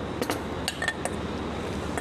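A few light clinks and scrapes of a metal spoon against a stainless steel mixing bowl as ceviche is spooned out onto a plate, one clink ringing briefly near the middle.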